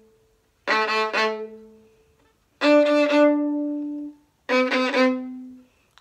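Violin playing double-stop semiquavers at a slow practice tempo, the bow biting into the string at the frog. There are three bursts of a few quick, accented strokes, each ending on a held note that rings and fades.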